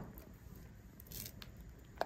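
Faint scraping of a silicone spatula stirring thick melted soap base in a glass bowl, with a couple of light clicks just past the middle.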